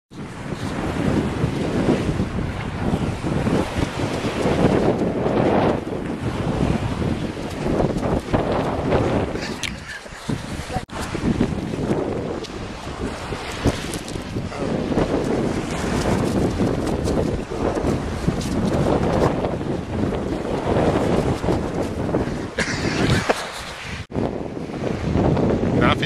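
Heavy wind noise buffeting a camera microphone carried on a small dog's back, a continuous rumbling rush that swells and dips, with brief lulls about ten seconds in and near the end.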